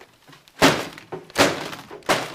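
A laptop smashed down onto a desk, twice: two heavy impacts about 0.8 s apart, the first the louder.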